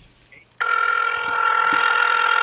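Ringback tone of an outgoing phone call: a single steady, loud ring that starts about half a second in, meaning the dialed number is ringing and has not yet been answered.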